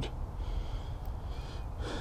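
Soft breathing close to the microphone in a pause between words, over a low steady rumble.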